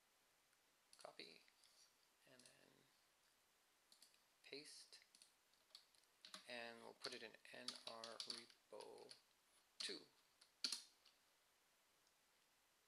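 Computer keyboard keystrokes and clicks at a quiet desk, with two sharper key presses near the end as a terminal command is finished and entered. Soft mumbled speech is heard in between.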